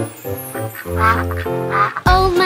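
Upbeat instrumental nursery-rhyme music, with a cartoon duck quacking twice over it in the second half.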